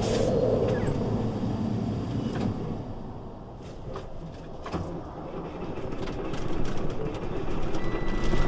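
Semi truck engine idling in a low, steady rumble heard inside the cab as the truck creeps to a stop in traffic, with a short hiss right at the start and a few faint clicks.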